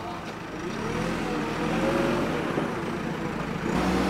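JCB backhoe loader's engine working as the bucket digs, its pitch rising and then falling in the middle; a steadier lower hum comes in near the end.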